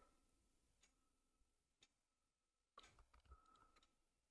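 Near silence with a few faint, short clicks, the clearest about three seconds in, as from a computer mouse.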